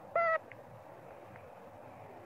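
A single short, high squeak from an infant macaque, about a quarter second long, shortly after the start, over steady outdoor background hiss.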